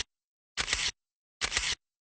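Two camera shutter clicks added as a sound effect, each short, under a second apart.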